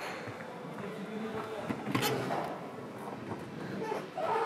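Indistinct background voices and room noise, with a single sharp knock about two seconds in.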